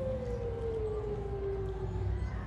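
A single voice holds one long note that slides slowly down in pitch, over a low background rumble.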